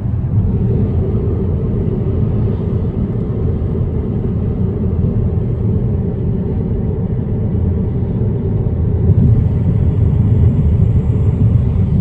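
Steady low rumble of road and tyre noise inside a moving car's cabin on a rain-wet road, getting a little louder about nine seconds in.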